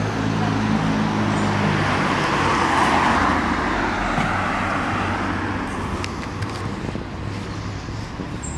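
Cars passing close by on a road, with engine hum and tyre noise. The noise is loudest about three seconds in and then fades away.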